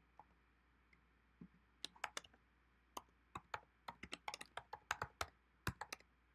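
Faint typing on a computer keyboard: irregular keystroke clicks, a few at first, then a quick run from about two seconds in as a short line of text is typed.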